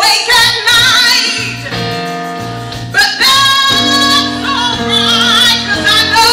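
A woman singing a gospel song into a microphone with vibrato on her held notes, over sustained electric keyboard chords.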